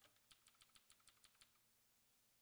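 Computer keyboard keys clicking faintly in a quick, even run of about ten presses at roughly eight a second, stopping about a second and a half in.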